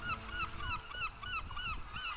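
Rapid string of short bird calls, about five a second, each one bending up and then down in pitch, over a faint low rumble.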